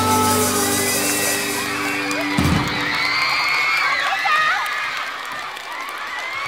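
A live rock band holds a final chord that ends with a last hit about two and a half seconds in. The concert audience then cheers and screams in high-pitched shrieks over applause.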